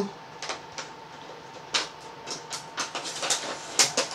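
A plastic blister-card toy package being handled, giving irregular light clicks and crinkles.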